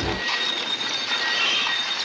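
A steady hiss with a faint, thin high whine running through it.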